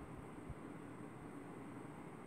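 Quiet indoor room tone: a faint steady hiss with a low rumble, and one faint soft bump about a quarter of the way through.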